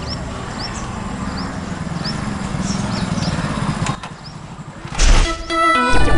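A motorcycle engine running as it comes up the street, growing a little louder, with birds chirping here and there. The engine sound drops away about four seconds in, a sudden loud burst follows about a second later, and music with held tones starts near the end.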